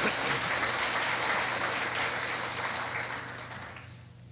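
Audience applauding, fading away over the last second or so.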